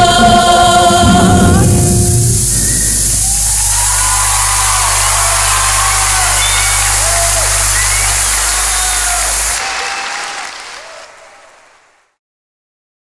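A choir of girls' voices and a band hold a final chord that stops about two seconds in, followed by audience applause with cheers and whoops. The applause fades out near the end.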